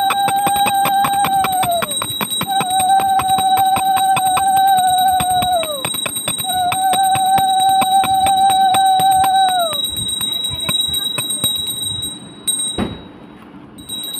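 A conch shell blown three times, each a long steady note of about three and a half seconds that sags in pitch at its end, over a hand bell rung rapidly in puja worship. The bell ringing stops about twelve seconds in.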